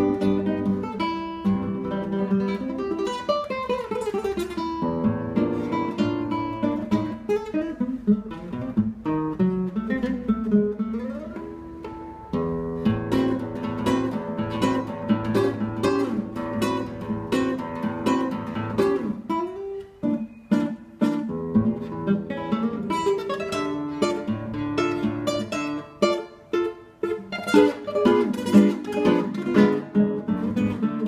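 Solo nylon-string classical guitar playing a tango, with fingerpicked melody and strummed chords, and a falling slide a few seconds in.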